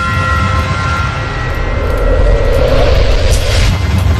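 Cinematic logo-reveal sound effect: a loud, steady deep rumble under ringing tones that fade out in the first second or so, with a whoosh swelling about three seconds in.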